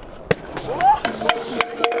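Stunt scooter and rider crashing onto concrete: a sharp clack a little after the start and a few more clacks in the second half, with shouting voices.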